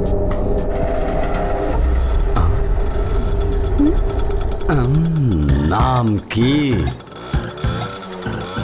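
Film background music over street traffic noise. Near the middle a wordless voice comes in, sliding widely up and down in pitch.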